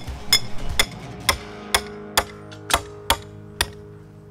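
Hammer blows driving metal stakes into the ground: about eight sharp strikes at a steady pace of a little over two a second.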